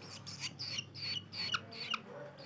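Long-tailed shrike nestling giving a rapid series of short, high begging chirps with its gape wide open, asking to be fed.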